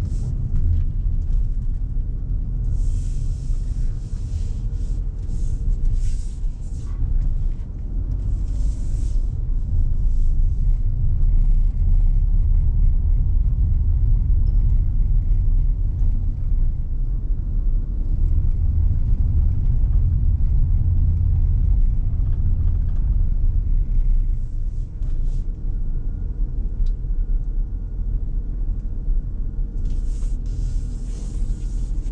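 Steady low rumble of engine and tyre noise from a Proton Iriz 1.6 L four-cylinder petrol car with a CVT, driving slowly and heard inside the cabin. The rumble swells through the middle and eases near the end, with brief hissing bursts about three and nine seconds in.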